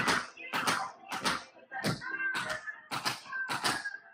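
Metal tap shoes striking a hard studio floor in an even rhythm, about two taps a second, several landing as quick doubles.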